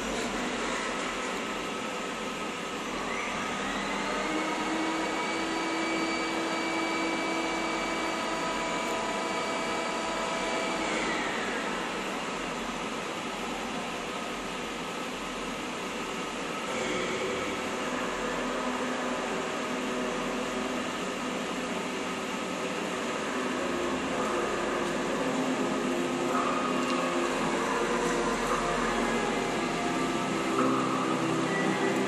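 Mercedes-Benz W140 S-Class running at low speed as it backs out and drives through an underground concrete garage. A steady high whine sets in about three seconds in and stops about eleven seconds in.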